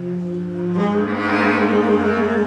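Live jazz: saxophone and a low reed instrument holding long sustained notes together. The lower line steps up in pitch just before a second in, and the sound swells slightly afterwards.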